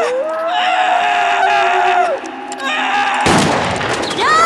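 A long, held scream that rises in pitch at the start, then a shorter cry, then a single gunshot about three seconds in whose boom rings on.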